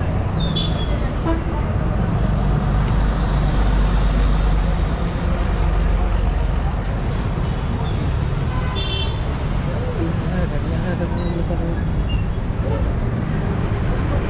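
Busy street traffic at a bus stand: bus and motor vehicle engines rumble steadily, heaviest in the first half. A brief high horn toot sounds about nine seconds in.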